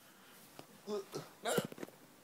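A person's short, quick vocal sounds about a second in, followed by a cluster of knocks and rustling as the phone is handled.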